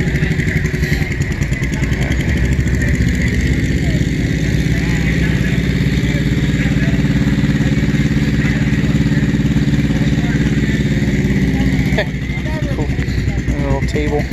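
An engine running steadily close by, with faint voices in the background; it gets quieter about twelve seconds in.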